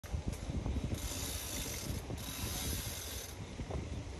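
Bicycle rear freewheel ticking quickly while the bike coasts, under a low tyre and wind rumble. A higher hiss joins from about a second in until near the end.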